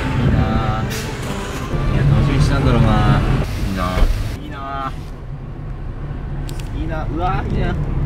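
Car driving, with a steady low road and engine rumble heard from inside the cabin.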